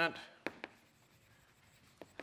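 Chalk writing on a blackboard, with two sharp taps of the chalk against the board about half a second in.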